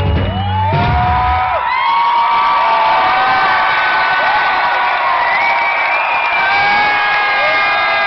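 Live rock band with electric guitar, bass and drums playing loud, stopping about one and a half seconds in. A concert crowd then cheers, whoops and screams.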